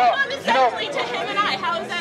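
Speech only: people talking over one another in an argument, a woman's voice among them.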